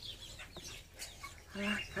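A hen's faint, high chirping calls, repeated several times, as she lays an egg in the nest box.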